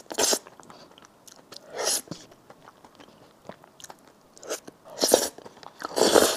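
A person slurping and chewing sauce-coated instant noodles close to the microphone: three loud, short slurps, near the start, about two seconds in and about five seconds in, with soft wet chewing clicks between.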